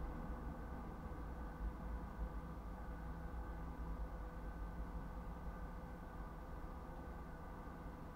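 Steady low hum inside a stopped car, with a few faint steady tones over it and no distinct events.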